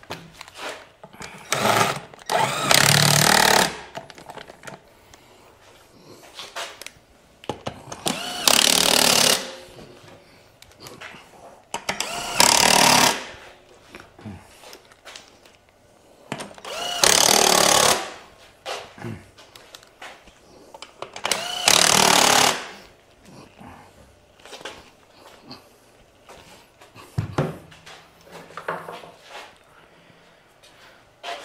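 Cordless impact driver running the bolts of a scooter's CVT transmission cover back in, in five short bursts of one to two seconds each. Small metallic clinks fall between the bursts, and there is a thump near the end.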